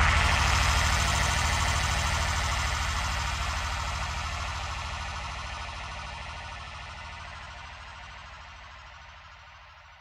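The closing fade-out of an acid techno track: after the drums stop, a sustained electronic synth drone over a steady low bass note dies away slowly and evenly to almost nothing.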